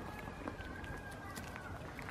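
Goat biting and chewing a cucumber: scattered crisp crunches, over a faint steady high tone.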